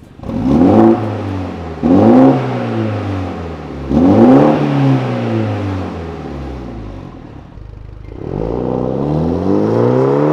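BMW M135i's turbocharged 2.0-litre four-cylinder through a Remus Race exhaust, revved in three sharp blips that each fall back. About eight seconds in comes a longer, slower rise in revs as the car pulls away.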